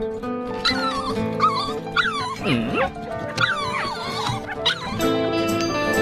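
A dog whining and yipping in a run of short cries that slide up and down in pitch, over background music. The music changes near the end.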